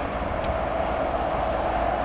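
Steady wind noise on the microphone, a low rumble, with a faint steady distant hum under it.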